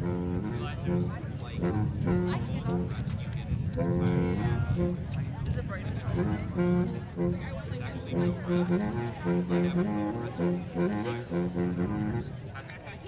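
A school band playing a tune in held notes, one note after another, with people talking over it.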